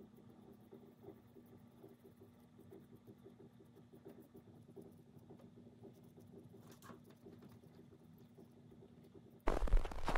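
Faint, rapid scratchy patter of a foam brush dabbing paint onto small wooden blocks. Near the end a sudden loud burst of sound cuts in.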